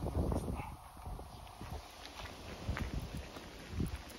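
Footsteps walking on a fine gravel path, about two steps a second.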